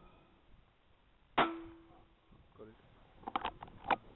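A single rifle shot about a second and a half in: a sharp crack with a brief ringing tail. Near the end comes a quick cluster of sharp clicks.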